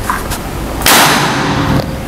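Moser OD32 LMAX single-shot PCP air rifle firing one shot, a sharp loud crack a little under a second in that trails off over about a second. It is a full-power shot with a Hercules pellet, clocking about 1028 fps on the chronograph.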